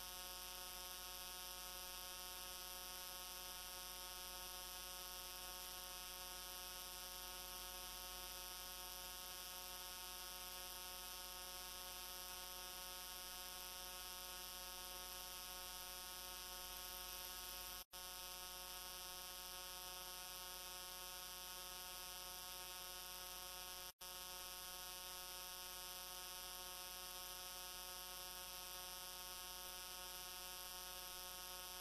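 Steady electrical hum, a buzz of many evenly spaced tones with a high hiss over it, unchanging throughout; it drops out for an instant twice, about 18 and 24 seconds in.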